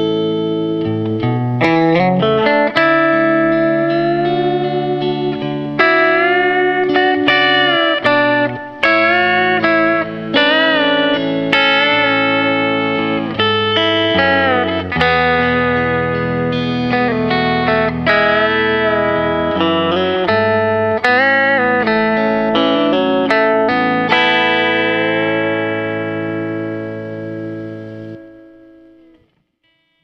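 Fender Telecaster electric guitar playing a pedal-steel-style country ballad riff in A, with string bends that glide notes up and back down, over looped backing chords from the same guitar. The playing fades out near the end.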